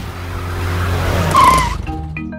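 Cartoon car sound effect: an engine hum that grows louder and ends in a short tyre screech about one and a half seconds in, as the car pulls up and brakes.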